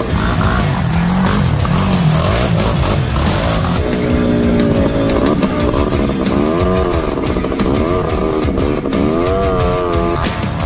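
Off-road vehicle engine revving up and down, its pitch rising and falling about once a second, over background music.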